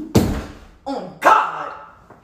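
A dog barking twice, about a second apart: loud, sudden barks that die away quickly.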